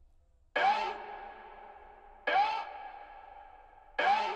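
Two layered vocal chant samples, processed with distortion and reverb, playing back from the beat. A held sung note starts about half a second in and again near the two-second mark, each opening with a short upward slide in pitch and dying away in a reverb tail. A third begins right at the end.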